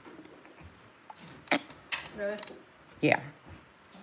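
A hand-held metal tally counter (clicker) being pressed, giving several sharp clicks between about one and two and a half seconds in.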